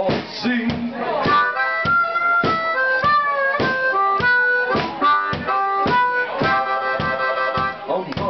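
Harmonica played into a microphone and amplified, playing chords and held notes that come in about a second in, over a drum beat about twice a second.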